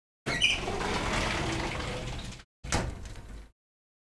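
A sliding window being pulled shut, a rushing slide of about two seconds, followed by a shorter, softer sound about a second later.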